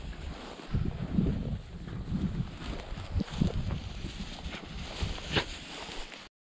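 Wind buffeting the microphone in an irregular low rumble, with scattered brushing and rustling of tall dry grass as someone walks through it.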